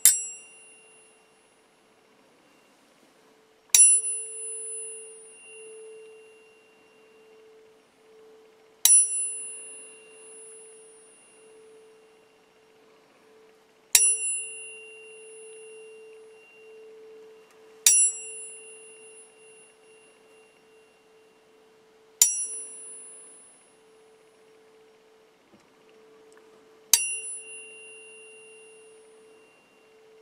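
A pair of metal tuning forks struck seven times, about every four to five seconds. Each strike is a sharp ping with bright high overtones that rings down over a few seconds, and a steady lower tone keeps sounding beneath.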